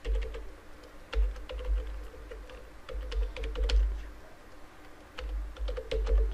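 Typing on a computer keyboard in short runs of keystrokes with brief pauses between them.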